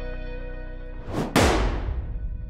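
Outro logo sting: a low music drone, then a short whoosh about a second in that leads into one heavy boom hit, which fades away with a ringing tail.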